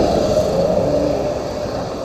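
A lorry passing close by on the road, followed by a car. Their noise is loudest in the first second and fades away.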